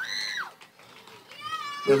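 Children in a concert crowd squealing: a short, very high arching squeal at the start, and a second, lower one about a second and a half in, over low crowd murmur.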